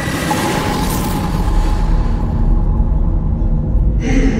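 Cinematic horror sound design: a hissing swell peaks about a second in, over a deep rumble that keeps growing louder, beneath dark trailer music.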